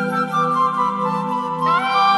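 Smooth jazz saxophone melody over a soft sustained backing, the sax sliding down between notes just after the start and scooping up into a higher note near the end.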